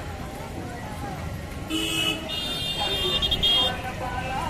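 Vehicle horn honking twice, a short high-pitched blast followed by a longer one of about a second and a half, over the murmur of a street crowd's voices.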